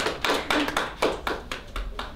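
A small group of people clapping by hand, loose claps about four a second, thinning out near the end.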